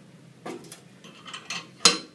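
Metal clinking from a chained hub-lift handle and a loaded steel loading pin being lowered: a few light clinks, then one sharp, ringing clank near the end as the weight is set down.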